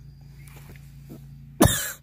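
Faint low background with a few soft short sounds, then about one and a half seconds in a single short, loud burst from a person's voice.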